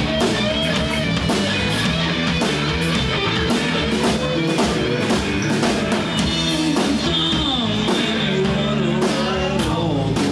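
Live rock band playing: electric guitar and bass guitar over drums keeping a steady beat, with bending guitar lines.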